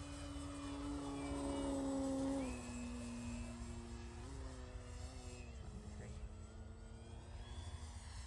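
E-Flite Extra 300 electric RC plane flying overhead, its motor and propeller humming at a steady pitch. The hum grows louder over the first two seconds, drops in pitch about two and a half seconds in, and drops again a little past halfway.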